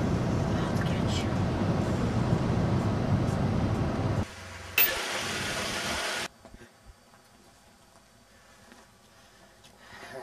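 Car running and driving, heard from inside the cabin as a steady low rumble for about four seconds. It cuts off abruptly; a click and a short hiss follow, then near silence.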